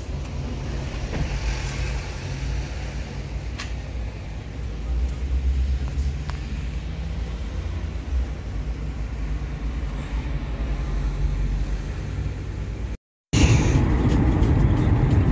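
Steady low rumble of a car's engine and road noise, heard from inside the cabin, with a few faint clicks. The sound drops out briefly near the end.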